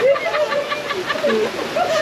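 Heavy rain pouring steadily onto paving and grass, with voices shouting over it.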